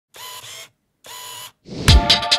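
Two short bursts of a camera sound effect, half a second each with a gap between them, then a rising whoosh that ends in a deep low hit.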